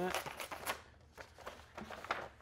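A paper envelope being opened by hand, rustling and crinkling in a run of short crackles in the first second, then fainter handling noise.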